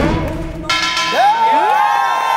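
The final struck chord of a gayageum ensemble with percussion, ringing away. About two-thirds of a second in, loud shouted cheers break out over it.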